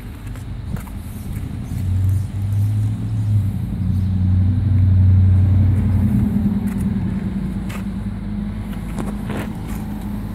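Bobcat S570 skid steer's diesel engine idling with a low, steady drone that grows louder in the middle and then eases.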